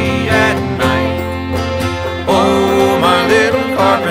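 Traditional folk song played by an acoustic band with plucked strings. A sliding melody line comes in about halfway through.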